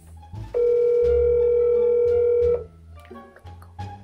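Phone ringback tone from a speakerphone: one steady two-second ring as an outgoing call rings on the other end. Background music with a low bass line plays underneath.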